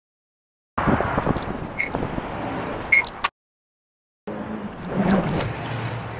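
Two short snippets of street background noise with scattered clicks and knocks, each broken off abruptly into dead silence by edit cuts.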